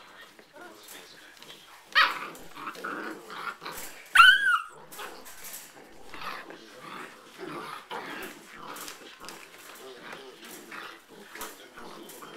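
A litter of seven-week-old Afghan hound puppies play-fighting over toys, with small growls and scuffling on blankets. A loud, sharp cry comes about two seconds in, and a louder rising-and-falling squeal about four seconds in.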